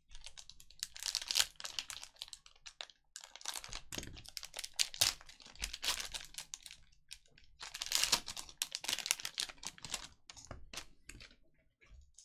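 Plastic wrapper of a trading-card pack crinkling and crackling as it is slit with a utility knife and pulled open, in dense runs with short pauses.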